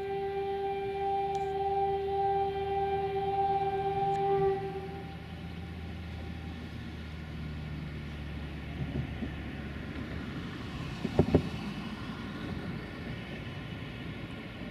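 An LDH 1360 diesel-hydraulic locomotive's horn sounds one long steady note that stops about four and a half seconds in, over the low drone of its engine as the train approaches. The drone carries on, and a couple of sharp knocks come about eleven seconds in.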